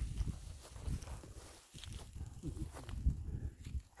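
Low, uneven rumble of wind and handling noise on a handheld microphone outdoors, with scattered faint scuffs like footsteps in dry grass.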